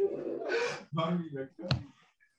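A person's voice speaking indistinctly over a video call, with a breathy gasp-like sound about half a second in and a brief click near the end.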